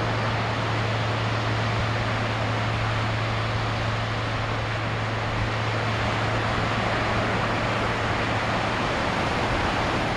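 Steady rushing noise of ocean surf and wind, with a constant low hum underneath.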